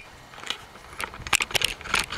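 A sharp crack right at the start, then quieter crunching and scattered clicks as the camera is moved about and handled.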